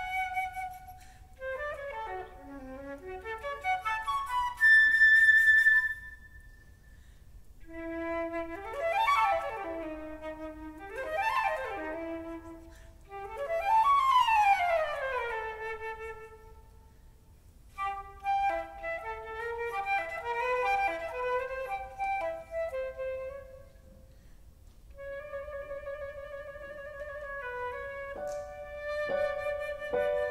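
Concert flute playing a classical solo line in phrases with short breaks, with several fast runs sweeping up and down near the middle and a long held note near the end.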